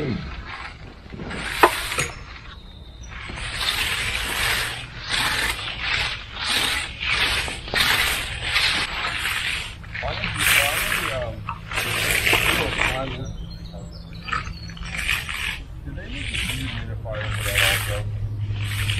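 Repeated rasping strokes of concrete finishing tools, a hand float and a long-handled float, dragged back and forth over the surface of a freshly poured concrete slab. A cough comes right at the start.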